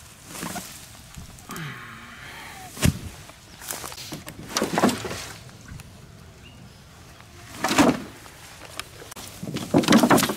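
Knocks and thuds of cover being flipped: boards and a sheet of rusty painted scrap lifted and dropped on the ground. There is a sharp knock about three seconds in, a cluster of clunks around four to five seconds, and a heavier thud near eight seconds.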